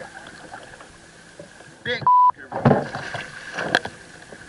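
A short, steady beep at a single pitch, a censor bleep edited over the sound track about two seconds in, with the surrounding audio muted while it plays. It falls right after an excited shout of "Big" and is typical of a bleeped-out swear word.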